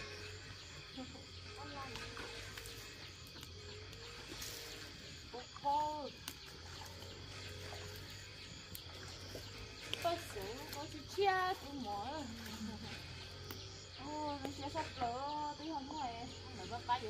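Women's voices talking in short bursts, over faint background music.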